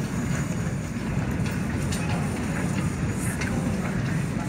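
Airport baggage carousel running: a steady low rumble with a few faint clicks from its moving plates.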